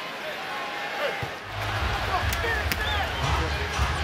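Arena crowd noise at a basketball game, with a basketball being dribbled on the hardwood court and a few sneaker squeaks. A low steady rumble joins the crowd about a second and a half in.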